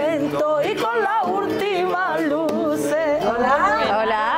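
Flamenco-style singing of a Huelva sevillana, the voice wavering quickly in pitch through long, ornamented notes, with Spanish guitar accompaniment.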